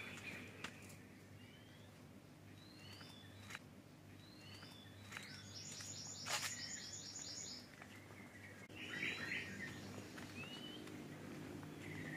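Birds calling in a tropical garden: scattered short rising whistled chirps, a fast rattling trill of repeated notes about five seconds in, and a brief chatter near nine seconds, all fairly faint over a low steady hum.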